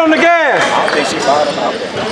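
Voices in a gymnasium during a basketball game: one drawn-out shout rising and falling in pitch about a quarter of a second in, then fainter calls echoing in the hall.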